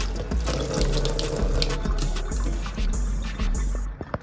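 Kitchen faucet running a stream of cold water over a raw pork shoulder into a stainless steel sink as hands turn the meat under it; the water cuts off suddenly at the very end.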